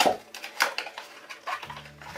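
Cardboard packaging and a boxed plastic vacuum accessory being handled and pulled out: light clicks, taps and scrapes. A low steady hum comes in near the end.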